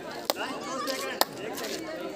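Two sharp smacks, about a second apart, over a background of spectators' and players' voices at an outdoor kabaddi court.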